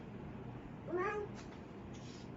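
A single short meow-like call about a second in, its pitch rising and then holding briefly, over a low steady background hiss.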